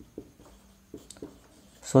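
Marker pen writing on a whiteboard: a few short, faint strokes and taps.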